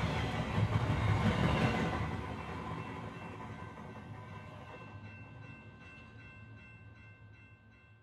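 A steady rumble with faint sustained high tones, fading out gradually until it is gone at the end; a faint, evenly repeating clatter shows through in the second half.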